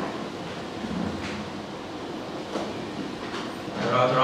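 Steady, rumbling room noise picked up through the microphone, with a few faint knocks as the microphone is handled and taken from its stand.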